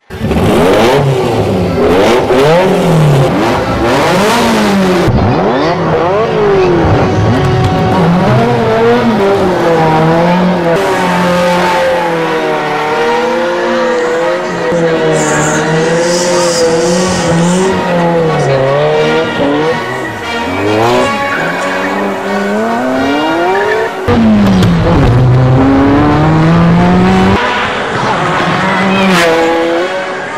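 Several Ferrari engines revving over and over, their pitch sweeping up and down and often overlapping. A sudden, louder burst of revving comes about 24 seconds in.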